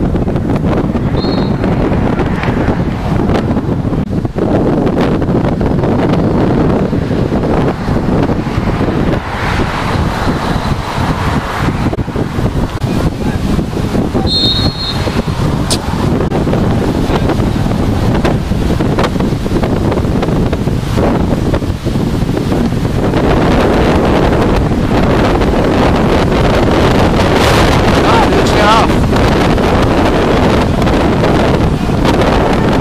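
Wind buffeting the camera microphone in a steady rumble, with faint distant voices of players calling. A referee's whistle blows briefly about a second in and again about halfway through.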